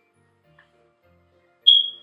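Soft background music, then about 1.7 seconds in a sudden shrill, high-pitched tone, short and loud, fading within a fraction of a second.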